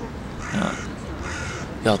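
A crow cawing about half a second in, over outdoor background noise.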